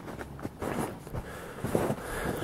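Footsteps in snow: a few soft, irregular steps.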